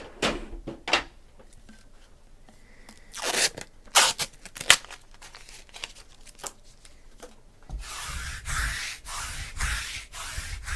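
A few short ripping strokes about three to five seconds in, then from about eight seconds in a lint roller rubbed back and forth over a cloth-covered table, about two strokes a second.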